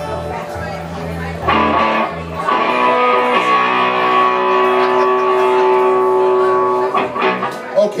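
Electric bass and electric guitar sounding between songs: low bass notes held for the first couple of seconds, then a guitar chord ringing steadily for about four seconds before it breaks off near the end.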